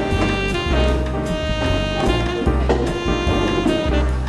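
Jazz background music: a horn melody over drum kit and bass, with a steady beat.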